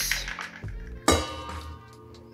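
A single clink about a second in as a small bowl knocks against a stainless steel mixing bowl while an egg is tipped in, the steel ringing briefly after. Background music runs underneath.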